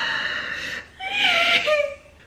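A woman's high-pitched, wheezy laughter-squeals of joy in two bursts, the second wavering and falling in pitch.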